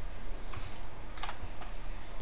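Computer keyboard being typed on: a few separate keystrokes spaced out across the two seconds, over a low steady hum.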